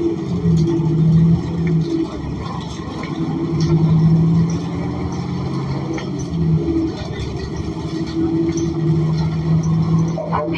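Cummins Westport ISL G natural-gas engine and drivetrain of a New Flyer XN40 transit bus running under way, heard from inside the rear of the cabin: a steady low drone that swells and eases several times.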